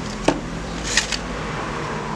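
A few sharp clicks from wires and clips being handled on an amplifier board, one about a quarter-second in and two close together around one second, over steady background noise.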